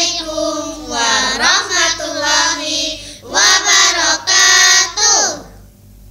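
A group of children singing together in several short phrases, then two long held notes, the last falling away about five seconds in.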